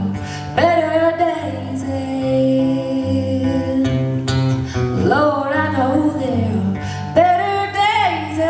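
Live acoustic country song: a woman singing with long held, sliding notes over strummed acoustic guitars.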